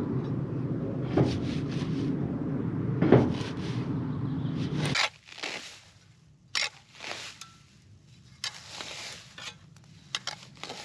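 Spade digging into turf and dry grass at the base of a barn wall: a steady low rumble with two sharp knocks, then, after the rumble cuts off about halfway, scattered scraping and crunching strokes of the blade through roots and soil.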